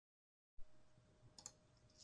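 Near silence. About half a second in, faint room tone with a steady hum cuts in with a small pop, followed by a couple of faint computer mouse clicks near the middle.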